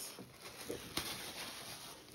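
Faint rustling and handling noise of cotton quilting fabric being shifted and unfolded on its bolt, with a soft tap about a second in.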